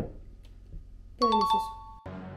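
A two-note descending ding-dong chime, doorbell-style, sounding about a second in and held to the end, preceded by a short knock right at the start.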